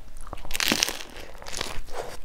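Crunch of a bite into a crisp fried Vietnamese spring roll (chả giò) with a rice-paper wrapper, wrapped in lettuce, about half a second in, then a second burst of crunching as it is chewed near the end. The wrapper was fried twice to make it crisp.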